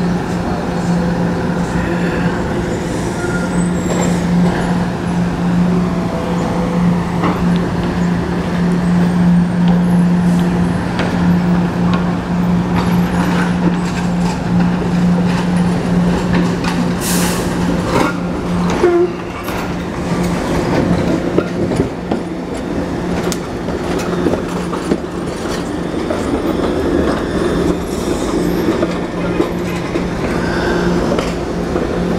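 SEPTA Kawasaki light-rail trolleys running on curved street track. A steady low hum from the cars sits under the rumble and clicking of wheels on rail, and a short high-pitched sound comes a little past halfway. The hum drops out for a few seconds about two-thirds through.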